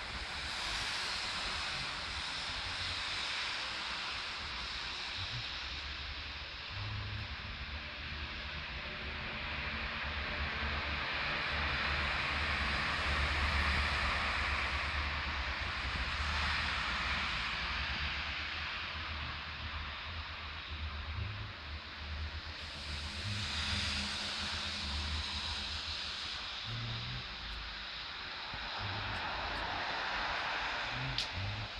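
Street traffic: a steady hiss of tyres and engines that swells twice as vehicles pass, with a low rumble of wind on the microphone.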